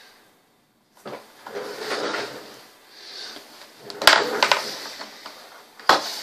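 Handling noise from a small circuit board and multimeter test leads being moved about on a desk: rustling with a few sharp clicks and knocks, the loudest about four seconds in and just before the end.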